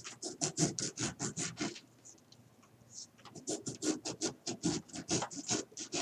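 Kitchen knife sawing into a fresh lime's rind with quick back-and-forth strokes, several a second, in two runs separated by a pause of over a second: the two crossing cuts that split the lime into quarters without cutting through.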